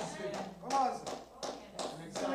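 Quiet speech: a man's voice speaking softly, much lower than the talk around it.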